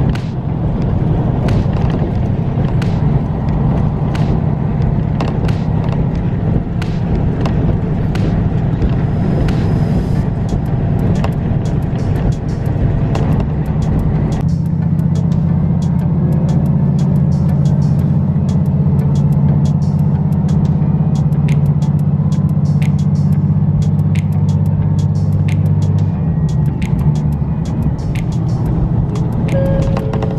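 Diesel railcar running, heard from inside the carriage: a steady engine drone over rail noise, with sharp clicks of the wheels on the track scattered throughout. About halfway through the low rumble lessens and the drone steadies, and part of the drone drops out a few seconds before the end.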